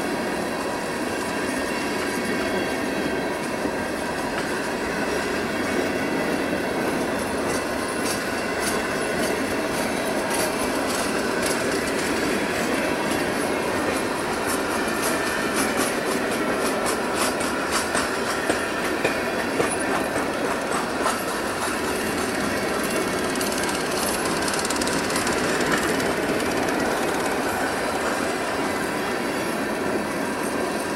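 Empty Bessemer & Lake Erie hopper cars rolling past: a steady rumble and rattle of steel wheels on the rails, with a run of quick clicks over the rail joints in the middle.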